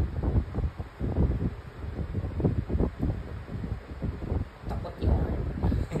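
Uneven low rumbling of wind or handling noise on a phone microphone, surging and fading, with a few faint clicks near the end.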